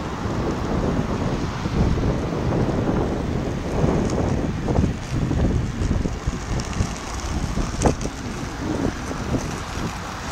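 Wind rushing over the microphone with the rumble of inline skate wheels rolling on asphalt, and one sharp click about eight seconds in.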